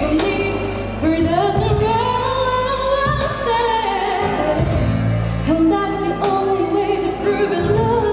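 A woman singing a pop ballad live into a handheld microphone over accompaniment with a steady bass line and light percussion; her line climbs to long held notes with vibrato, then falls away.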